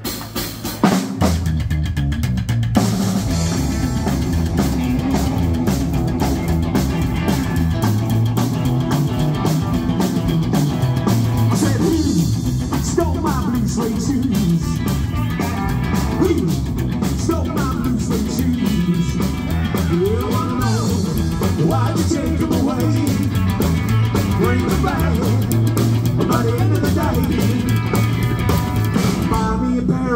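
Live rockabilly band playing: upright double bass, electric guitar and drum kit, kicking in just after the start and then running loud and steady.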